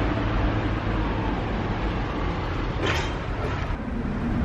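Loud, steady low rumble of a large road vehicle's engine running close by, with traffic noise over it and a brief swell of hiss about three seconds in.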